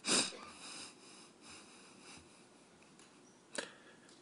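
A man crying: a loud sniff right at the start, then quiet, shaky breathing. A brief sharp click comes near the end.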